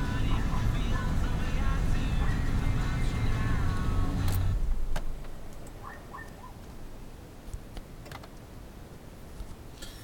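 1999 GMC Suburban's engine idling steadily a minute after a cold start, with music playing over it for the first four and a half seconds. Then the louder layer cuts off sharply, leaving a quieter idle.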